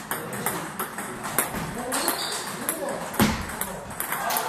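Table tennis balls clicking repeatedly against bats and tables, hit after hit at several tables in a large club hall. A heavier thump about three seconds in.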